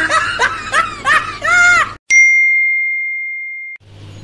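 Laughter in short rising-and-falling pulses for about two seconds, cut off abruptly by a single bright ding sound effect, a clear bell-like chime that rings out alone and fades steadily for nearly two seconds.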